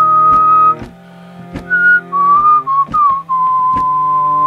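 A whistled melody over sustained harmonium chords. A long high note breaks off about a second in; a few short notes follow and settle into a long held note near the end. Sharp ticks recur throughout.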